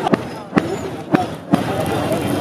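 Three sharp knocks about half a second apart, from a metal rod working inside a bamboo cooking tube of chicken.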